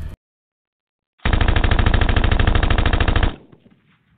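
Sound effect of rapid automatic gunfire: a dense burst of quick, evenly spaced shots starting about a second in, lasting about two seconds, then cutting off into a short fading tail.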